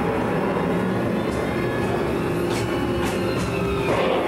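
Disneyland Railroad passenger car rolling along the track: a steady rumble with a few sharp clicks of the wheels over rail joints, under background music.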